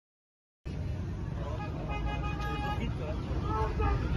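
Street noise with a heavy low rumble, cutting in suddenly after a moment of silence; about two seconds in, a car horn sounds steadily for under a second.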